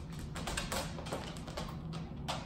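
A dog's claws tapping on a hardwood floor and on the tray of a wire crate as it trots in: a quick, irregular run of light clicks.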